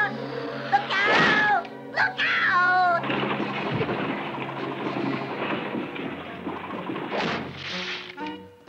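Cartoon sound effect of a wooden water wheel crashing down and breaking apart: a long, rumbling crash from about three seconds in, over music. Two short sliding pitched sounds come before it.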